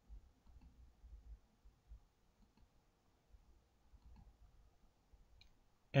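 Quiet room tone with a few faint clicks and low thumps, one sharper click shortly before the end.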